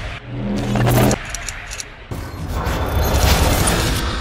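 Animated logo sting made of sound-design effects: a low pitched tone lasting about a second, a quick run of clicks, then a noisy whoosh that swells up over a deep rumble and holds.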